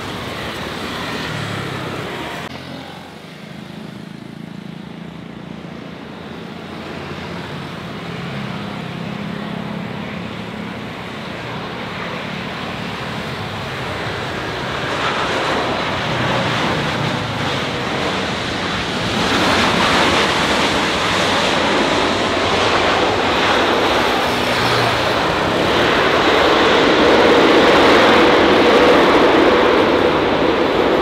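Boeing 787-9 airliner landing: its jet engine noise grows steadily louder as it comes over the runway and touches down about midway, and is loudest in the last few seconds as it rolls out. In the first couple of seconds, a business jet's engine noise is heard before it cuts off.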